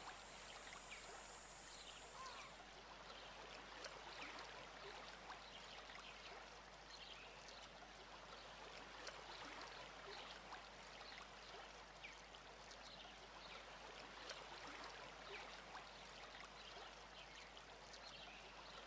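Faint, steady sound of trickling running water, with many small ticks through it.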